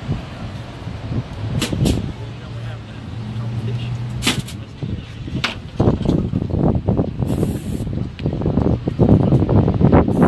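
Indistinct voices over steady outdoor background noise, broken by a few short sharp sounds in the first half.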